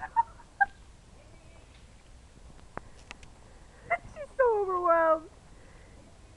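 A single pitched, whine-like call, under a second long and falling steadily in pitch, about four and a half seconds in. Two short squeaks come at the start and a few faint ticks in the middle.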